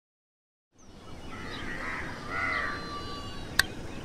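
Evening outdoor ambience fading in after a moment of silence, with birds calling several times and a single sharp click near the end.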